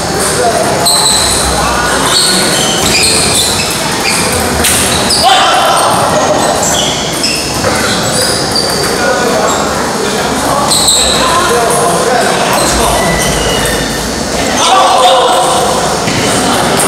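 Celluloid-type table tennis balls ticking off rubber paddles and the table tops, irregular overlapping rallies from several tables in a large hall, over a steady murmur of voices.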